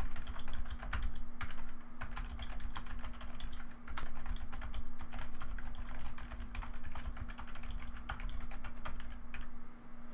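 Typing on a computer keyboard: a continuous run of irregular key clicks as a sentence is typed out.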